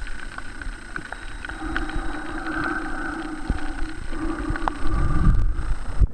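Underwater ambience picked up by a submerged camera: a steady rush of water with faint humming tones and scattered sharp clicks, swelling into a louder low rush of water about five seconds in as the camera rises to break the surface.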